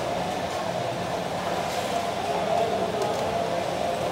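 Steady din of a busy communal dining hall: an indistinct murmur of many people over a continuous hum, with a couple of faint clinks of steel dishes.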